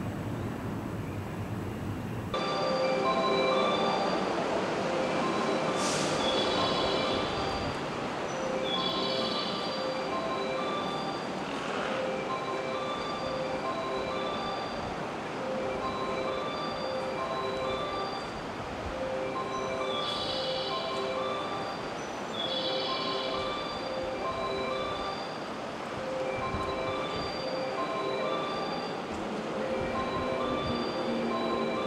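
Electric train running through the station, a steady rumbling noise, with a tune of short chime-like notes repeating over it from about two seconds in.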